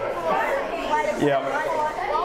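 A group of children's voices chattering over each other, with a man saying "yeah" about a second in.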